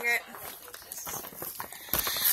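A woman's voice ends a word right at the start, then low film dialogue from a turned-down TV plays faintly under light handling noise from a phone being moved, with a short click near the end.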